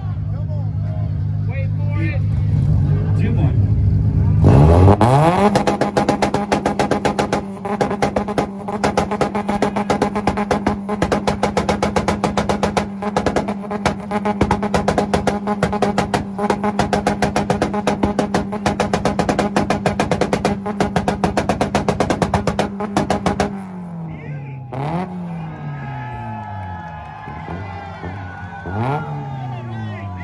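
A car engine idles, then revs up about four seconds in and is held against a rev limiter at one steady pitch, stuttering very rapidly for nearly twenty seconds. It then drops back and is blipped up and down a few times.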